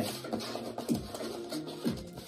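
Background music playing, under tarot cards being slid and scraped across a tabletop as they are spread out by hand.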